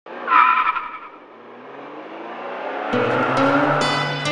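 A sudden loud tire squeal, like a car skidding, that fades into a building whoosh. About three seconds in, music starts with a low steady tone, and plucked guitar strings come in near the end.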